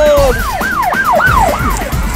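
A siren wailing in quick yelps, its pitch rising and falling about three times a second.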